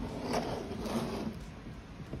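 Glass terrarium's sliding front doors scraping along their track, mostly in the first second or so, then fading.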